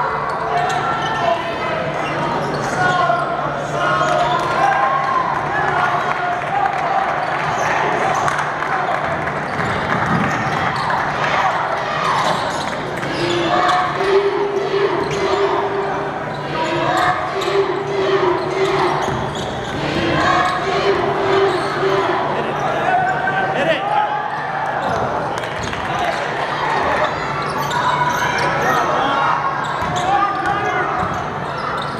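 A basketball bouncing on a hardwood court during live play, with short sharp impacts throughout, under indistinct voices of players and spectators and a steady low hum.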